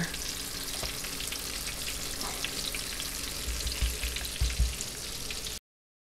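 Egg-washed, floured slices of elk heart frying in a shallow layer of hot oil in a pan: a steady sizzle with fine crackles. A few low thumps come near the end, then the sound cuts off abruptly.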